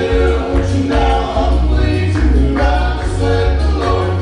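Male gospel vocal group singing in close harmony through a PA system, over a steady, pulsing bass in the accompaniment.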